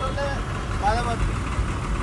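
Steady low rumble of idling vehicle engines in stopped traffic, heard from inside a car beside a bus, with short snatches of voice over it.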